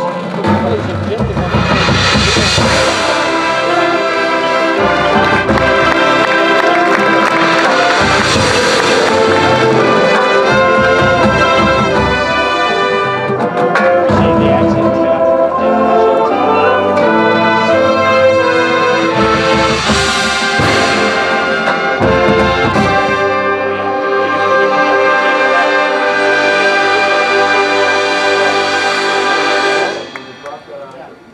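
Marching band playing: brass holding loud sustained chords over drums and marimbas, swelling three times to big accented hits. The music breaks off at the end.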